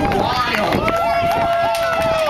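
Children's voices shouting and calling out over one another, with one voice holding a long, steady shout from a little under a second in.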